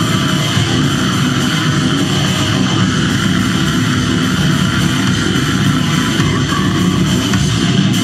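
Brutal death metal band playing live at full volume: distorted electric guitars and bass over a drum kit, in a dense, unbroken wall of sound.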